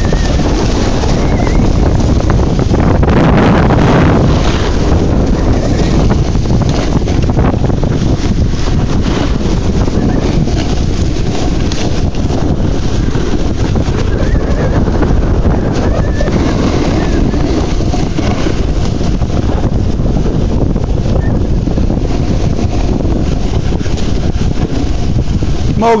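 Loud, steady wind rumble buffeting the microphone of a camera carried downhill at speed, over the scrape of the camera-holder sliding across packed, tracked snow.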